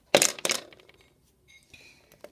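A plastic toy pony figure dropped onto a hard floor, clattering in a short burst of quick knocks that dies away within about half a second.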